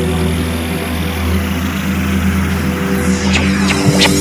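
Electronic drum and bass track intro: sustained low synth chords under a hiss of noise, with sweeping effects building in the last second.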